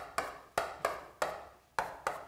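Chalk tapping and scraping on a chalkboard as characters are written: a run of sharp ticks, roughly three a second, six or so in all.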